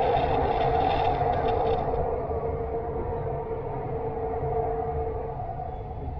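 Inside a driverless Dubai Metro train running on an elevated track: a steady rumble under a two-tone whine, with an extra rush of noise in the first two seconds. The whine eases slightly near the end.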